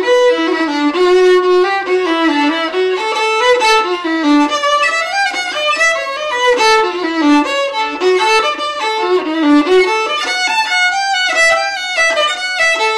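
A solo fiddle bowing a waltz melody in A, the notes moving stepwise up and down with full, ringing overtones.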